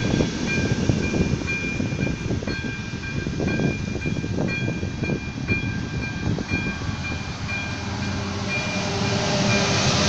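Railway passenger carriages rolling past over a level crossing, their wheels clattering, while the crossing's ZV-02 electronic warning bell dings at a steady pace. Near the end a diesel locomotive's engine grows louder as it reaches the crossing.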